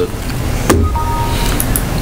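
Steady low hum of the room's background noise, with a single sharp click a little under a second in and two faint, brief steady tones just after.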